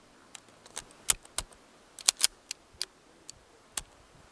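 Irregular sharp metallic clicks and clacks of a handgun being loaded and made ready: about a dozen of them, the loudest bunched together near the middle.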